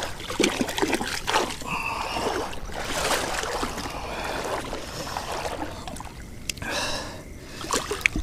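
Shallow water splashing and sloshing in irregular bursts as a snook is lowered back into the water by hand for release, with the angler's heavy breathing.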